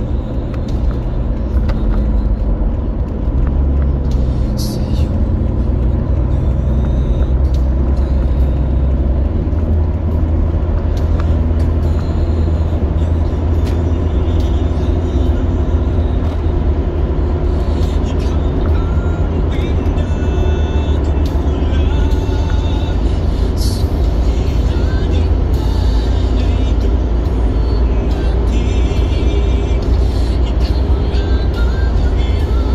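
Steady low road rumble of a car cruising on a highway, heard from inside the cabin, with music and voices playing over it.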